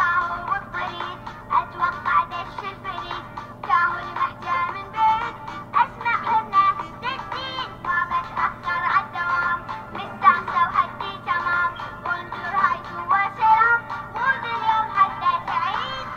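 A song playing: high, synthetic-sounding singing over music, with a faint steady hum beneath.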